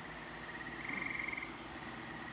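A high, pulsing trill, like an animal's call, runs steadily and grows louder for about half a second, about a second in.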